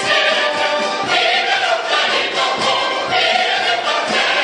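A chorus of many voices singing with musical accompaniment, steady and full throughout.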